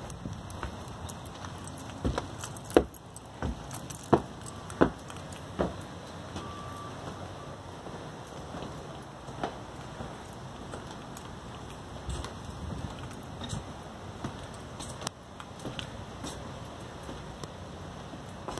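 Footsteps on wooden porch steps: six hard knocks about two-thirds of a second apart, starting about two seconds in. After them only a steady outdoor background with a few faint clicks.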